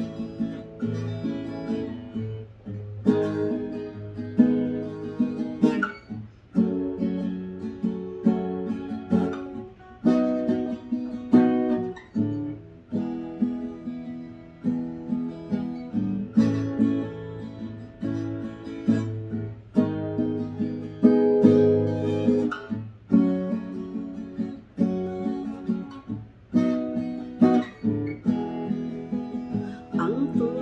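Acoustic guitar strummed in a steady rhythm, chords changing every few seconds: an instrumental introduction before the singing begins.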